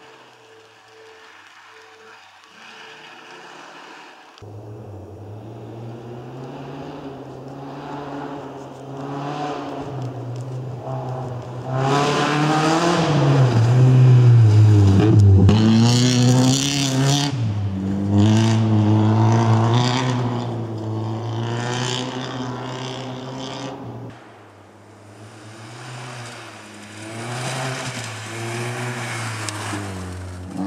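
Opel Corsa rally car's engine revving hard and shifting up and down as it drives past on a gravel stage, heard over several cut-together passes. It is faint at first, then loudest about halfway, where the engine note swoops down as the car goes by close.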